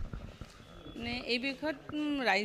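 Speech: a woman starts talking into a handheld microphone about a second in, after a short lull of low rumble and faint knocks.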